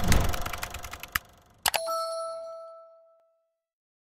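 Logo-sting sound effects: a noisy whoosh broken by several sharp clicks, then a single struck chime about one and a half seconds in that rings on one clear pitch and fades out by about three seconds.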